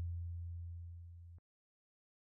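Tail of a deep bass boom sound effect under a title card: a low humming tone fading away, cut off suddenly about one and a half seconds in.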